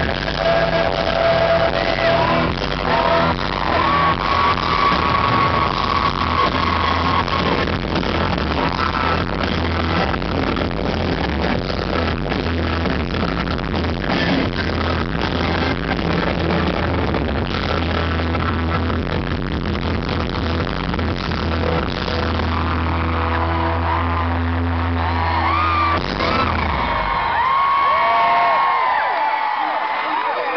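Live rock band playing loudly through a concert PA, bass-heavy and distorted in a low-quality recording made from the audience. The music stops near the end and the crowd screams and cheers.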